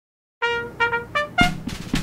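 A short brass fanfare in the style of a trumpet call: after a moment of silence, a held note, two quick repeats, then two rising notes, the last one landing with a drum hit and ringing out.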